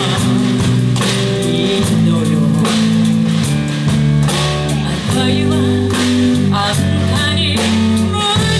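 A live rock band playing: electric guitars and a drum kit with a steady beat, with sung vocals over them.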